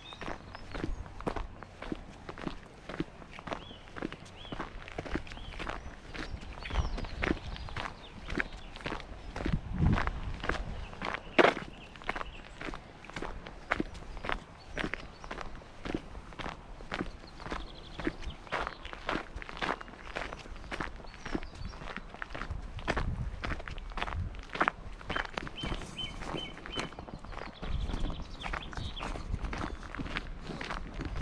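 Footsteps of a person walking at a steady pace on a dry dirt and gravel track, about two steps a second, heard close up from a camera carried by the walker.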